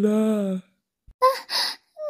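A woman's tearful voice holds a drawn-out crying vowel that tails off about half a second in. It is followed by two short, sharp breathy gasps, like sobbing intakes of breath.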